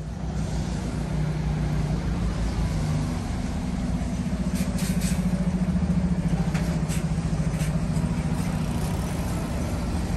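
Engine of a double-decker bus running close by: a steady low hum, with a few short, sharp sounds about halfway through.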